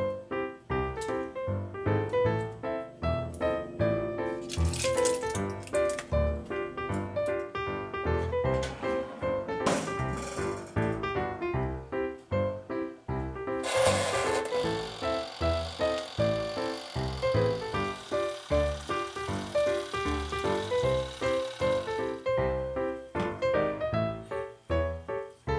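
Background music with a steady beat and a bright melody. A few short rustling noises come about a quarter and halfway through, and a steady hiss sits under the music from a little past halfway until near the end.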